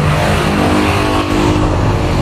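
A motor vehicle engine running steadily, loud and continuous, with a low hum.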